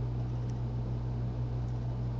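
Steady low hum with faint hiss: the background noise of the room and recording setup, with no other sound standing out.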